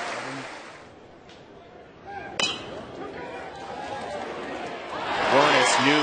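Ballpark crowd noise that dies down, then one sharp metallic crack of a metal college baseball bat hitting the ball about two and a half seconds in. The crowd noise swells after it.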